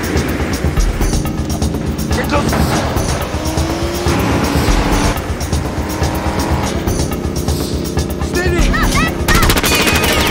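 Film soundtrack mix of a semi-truck and car at highway speed: steady loud engine and road noise with a music score underneath. Short high squeals come in a little before the end.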